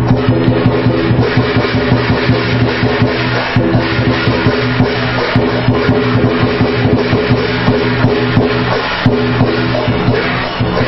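Chinese lion dance music: a large drum beaten in a fast, even rhythm over sustained ringing tones.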